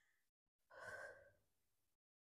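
A woman's single faint, sigh-like exhale about a second in, from the effort of holding a glute bridge; otherwise near silence.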